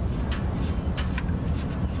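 A nut being spun off the starter's terminal stud by hand, with a few light metallic clicks, over a steady low rumble.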